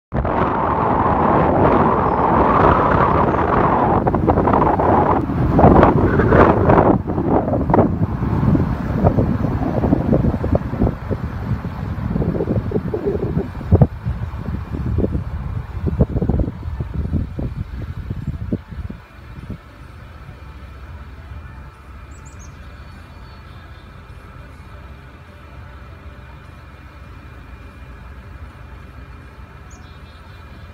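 A car driving, heard from inside: loud road and wind noise with irregular gusty rumbles, which dies down about two-thirds of the way through to a quiet steady low hum as the car slows.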